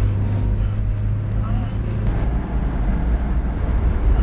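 Car driving, heard from inside the cabin: a steady low rumble of engine and road noise.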